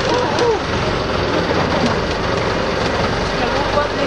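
Motorboat engine running steadily, with faint voices near the start.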